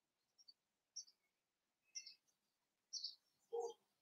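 Near silence with a few faint, short bird chirps about a second apart, and a soft lower sound near the end.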